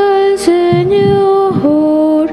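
Slow liturgical singing: voices hold long sustained notes that step from one pitch to the next, as in a chanted hymn or psalm.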